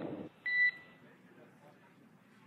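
The tail of a crew radio callout, then a single short electronic beep on the spacecraft radio loop: one steady high tone lasting about a third of a second, followed by faint radio hiss.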